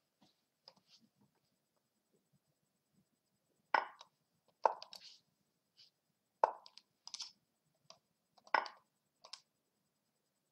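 Online chess move sounds on lichess: a short wooden click each time a piece is moved, six of them in the second half, falling roughly in pairs as the two players answer each other quickly.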